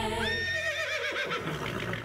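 A horse's whinny: a high call that holds briefly, then wavers and falls in pitch over about a second and a half.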